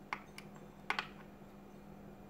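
A few light clicks from small metal and plastic parts of a dismantled wall light switch being handled, the loudest about a second in, over a steady low hum.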